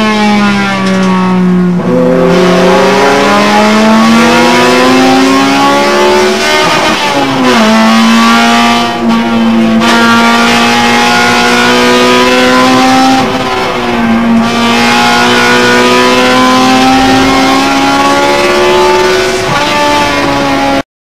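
Honda Civic EG6's B16A four-cylinder VTEC engine at racing pace, heard from inside the cabin. Its pitch climbs slowly along long pulls and drops abruptly at gear changes, about seven and thirteen seconds in.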